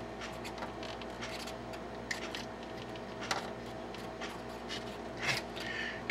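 Faint handling clicks and rubbing as small wire clips are worked by hand onto the wires of a water heater thermostat, with a few sharper clicks about two, three and five seconds in, over a low steady hum.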